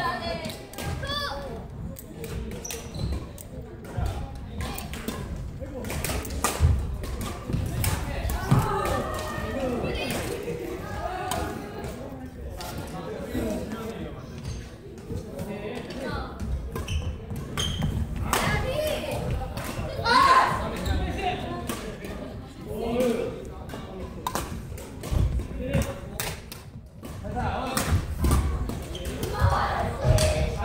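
Badminton doubles rally in a large, echoing gym. Irregular sharp racket strikes on the shuttlecock mix with footfalls thudding on the wooden court, and players' voices call out now and then.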